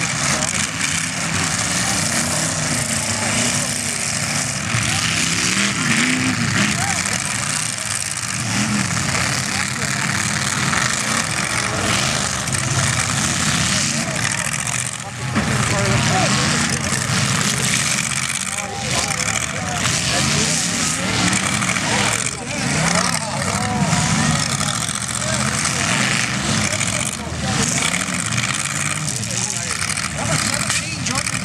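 Several demolition derby cars' engines revving hard and running together, pitch rising and falling as they accelerate and back off.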